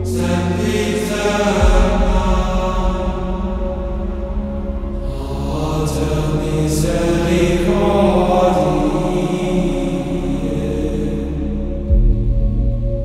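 Gregorian-style chant music: long held sung notes over a steady low drone, with a new phrase entering near the start and another around the middle.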